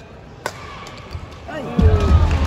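A single sharp smack about half a second in, a badminton racket striking the shuttlecock, then a falling shout about one and a half seconds in, and the arena crowd breaking into loud cheering near the end as the rally is won.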